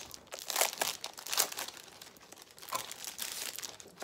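Paper and tissue paper crinkling and rustling as a pack of cardstock is lifted out of a tissue-lined box, in irregular crackles with a few sharper rustles in the first half.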